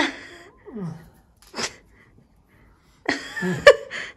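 Short wordless vocal sounds: a brief falling hum about a second in and a quick sniff-like burst, then a high-pitched voice starting up in the last second.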